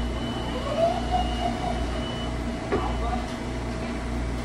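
Sliding side doors of a Metro-North commuter railcar closing with a sharp knock about three-quarters of the way through, over the train's steady standing hum.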